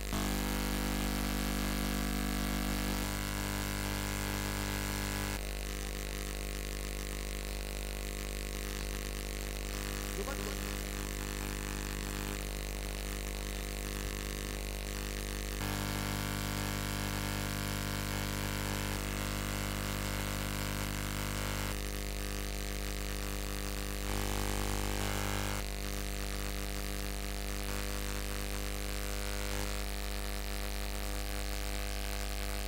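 A steady, loud machine hum with several held tones stacked over a low drone, its tone shifting slightly every few seconds.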